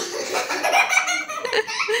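Children laughing, several voices at once, starting suddenly and carrying on throughout.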